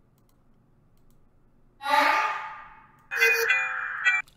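Near silence, then processed vocal samples from a beat playing back: a pitched vocal sound starts sharply about two seconds in and fades away, and a second, brighter one comes in about a second later and holds a steady tone.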